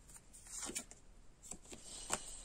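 Faint rustles and a few soft taps of fortune-telling cards being handled as one card is drawn from a fanned-out deck.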